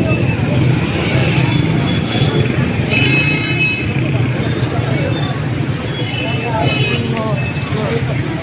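Busy street traffic of motorcycles, their engines running close by, with a few short horn beeps and people talking in the background.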